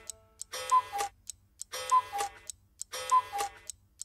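Clock-striking sound effect: a falling two-note chime with a click, sounding three times about 1.3 s apart as the clock strikes four.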